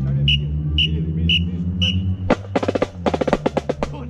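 Drum-led music: four evenly spaced high clicks about half a second apart over a low sustained bass, then a burst of rapid snare drum strokes a little past halfway.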